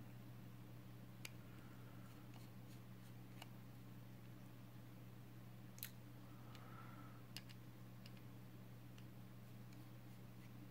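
Near silence over a steady low hum, with a few faint clicks of a small screwdriver and tiny screws being handled while the mounting screws are taken out of a Mobius Mini camera board.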